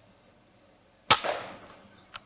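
A Weihrauch HW100 .22 pre-charged air rifle fires a single shot about a second in: a sharp crack with a tail that dies away over most of a second.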